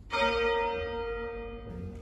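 A rope-rung church bell struck once near the start, its tone ringing on and slowly fading: a mourning toll.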